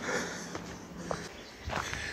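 Footsteps going down stone steps, about four treads a little more than half a second apart, with the walker's breathing close to the microphone.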